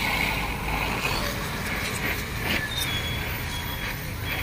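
Gas brazing torch flame hissing steadily while a filler rod is run into a leak in a radiator core's tube.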